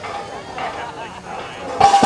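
Plate-loaded strongman farmer's walk implements, here carrying 262 lb, dropped onto a concrete path at the end of the carry: one loud clank near the end, over onlookers' voices.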